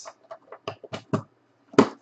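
Trading cards and their box being handled on a tabletop: a quick run of light clicks and taps, then one louder knock or snap near the end.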